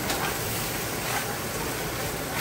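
Steady sizzle of sausage and peppers frying in a hot pan, with a few soft scrapes of a spoon stirring cooked pasta in a pot.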